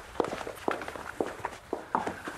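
Footsteps walking away, about two steps a second.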